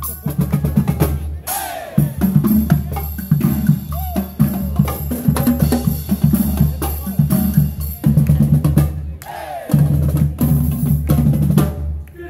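A college marching band of saxophones, trumpets, trombones, sousaphone and a drumline of snare, tenor and bass drums playing a loud, rhythmic, upbeat number. The drums are prominent, and the music stops at the very end.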